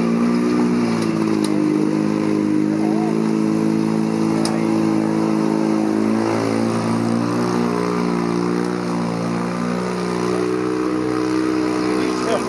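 Vintage car engine running hard at steady revs in a low gear as the car climbs a muddy hill toward the listener and passes close by.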